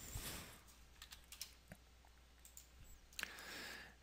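Faint, scattered computer keyboard keystrokes and clicks, a few separate taps over a couple of seconds.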